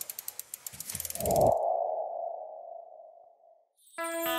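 Sound effect for an animated logo sting: a quick run of ticks that speed up over about a second, then a low hit with a ringing tone that fades away over about two seconds.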